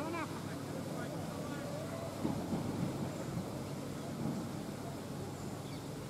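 Steady wind rumble on the microphone, with distant voices calling out faintly at the start and again a couple of seconds in.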